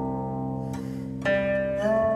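Guqin, the seven-string Chinese zither, played: a ringing note fades, then a new string is plucked about a second in and slides up in pitch near the end.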